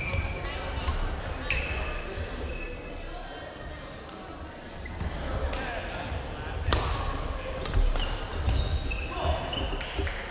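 Badminton rally on a gym floor: several sharp racket strikes on the shuttlecock, one to a few seconds apart, with short high sneaker squeaks on the hardwood court, echoing in the hall.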